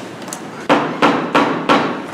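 A gavel rapped four times, about three sharp raps a second, calling a meeting to order.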